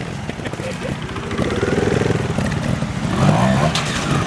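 Trials motorcycle engine running on and off the throttle, revving up in rising bursts from about three seconds in as the bike is driven through a shallow stream. Water splashes near the end.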